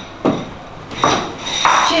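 Tableware being handled on a kitchen counter: a sharp knock about a quarter second in and another about a second in, with scraping between them.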